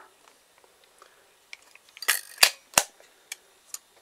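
The hinged film door of a Ricoh KR-5 35 mm SLR being swung shut: a brief scrape about halfway through, then two sharp snaps about a third of a second apart as it latches, with a few light handling ticks before and after.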